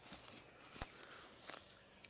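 Quiet woodland background with two faint, sharp clicks, one a little under a second in and a fainter one past the middle.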